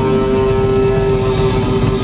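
Live rock band, with a lead electric guitar holding one long sustained note over the band's low rumble.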